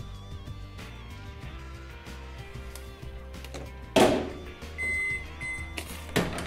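Background music, then a Kenwood microwave oven's door shutting with a thunk about four seconds in, followed by two beeps from its keypad as it is switched on with a lit match inside.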